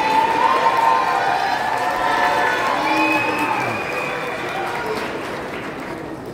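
Audience applauding and cheering, with many voices calling out over the clapping; the applause dies away toward the end.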